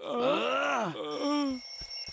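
Cartoon bear's strained, drawn-out groan, rising and falling in pitch for about a second and a half, as one bear lies pinned under the other. A steady high-pitched electronic tone starts about a second in and carries on, with a couple of short knocks near the end.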